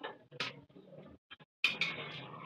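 A cooking utensil scraping and knocking against a frying pan during stirring: scraping noise broken by a few sharp clicks, the loudest pair near the end.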